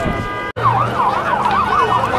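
Emergency vehicle siren in a fast yelp, its pitch sweeping up and down about four times a second. It starts abruptly about half a second in, after a steady held tone cuts off.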